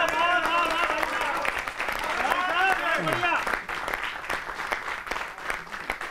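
A studio audience applauding after a comic punchline, with several voices calling out over the clapping for roughly the first three seconds, after which the clapping carries on alone.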